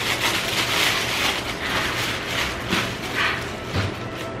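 Tissue paper rustling and crinkling in uneven bursts as it is pulled and unfolded out of a shoe box.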